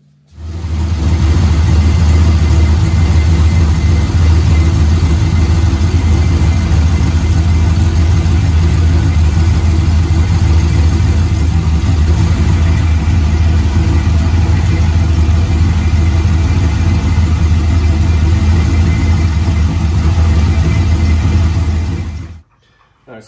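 Turbocharged LS V8 swapped into a 1995 Mustang GT, idling steadily with a loud, low rumble.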